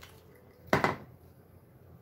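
Tarot cards being handled: a card is set down on the open book, giving one short double tap about three-quarters of a second in, over faint room noise.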